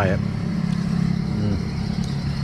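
Motorbike engine idling steadily while stopped.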